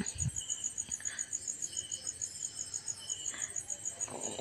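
An insect chirping in rapid, evenly spaced high-pitched pulses, with soft rustling as drumstick leaves are tipped into a frying pan and stirred with a steel spoon.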